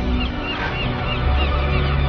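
A flock of large waterbirds calling, a quick run of short repeated calls over a loud, steady low drone.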